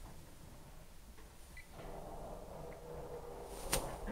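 Motorized projection screen starting to roll up: a steady motor hum begins about halfway through, and a single sharp click comes near the end.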